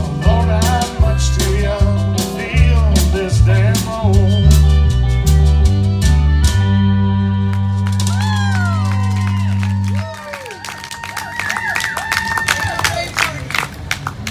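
A live country band playing the closing bars of a song: a walking bass line played on a Roland FR-4x V-Accordion, drums, guitar and sung vocals, landing on a held final chord about six seconds in. The low bass note cuts off at about ten seconds, leaving sliding notes and sustained high tones ringing out more quietly.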